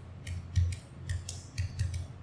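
Computer keyboard being typed on: about six separate, unevenly spaced key clicks, each with a dull knock.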